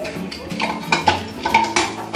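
Metal cookware and utensils clinking and clattering against each other at a stainless steel sink, several sharp knocks in a row after about the first second.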